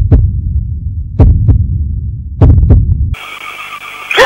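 Heartbeat sound effect: three slow, low double thumps, about a second and a quarter apart. Just after three seconds in they stop and a steady static hiss takes over.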